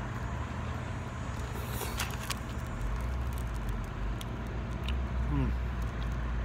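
Steady low outdoor rumble that deepens a little under halfway through, with a few faint clicks about two seconds in.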